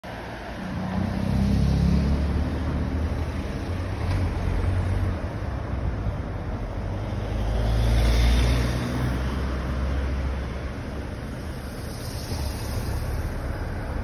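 Cars passing on a town street. One goes by about two seconds in, and a second, louder pass swells and fades about eight seconds in, over a steady low rumble of traffic.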